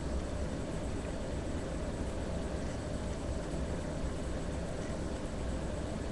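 Steady background hum and hiss with no distinct events: low-level room or recording noise.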